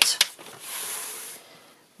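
A sheet of cardstock sliding across the base of a paper trimmer: a couple of light taps, then a soft papery hiss lasting about a second that fades away.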